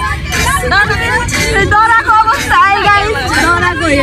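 Several women's voices talking and exclaiming over one another inside a moving van, over the steady low rumble of the vehicle.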